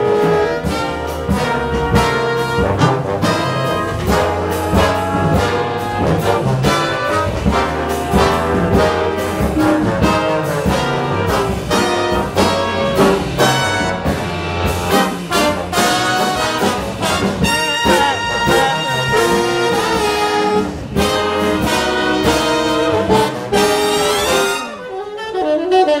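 Jazz big band playing: brass and saxophone sections over upright bass. About a second before the end the full band drops back and a tenor saxophone comes to the fore.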